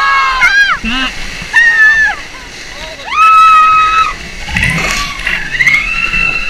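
A group of rafters shrieking and yelling as a whitewater rapid splashes over the raft, over the steady rush of the water. There is a long held high scream about three seconds in, and another one starts right at the end.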